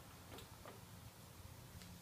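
Near silence with a few faint clicks from a removed ignition switch and test light being handled on a workbench, as the key is turned to the start position.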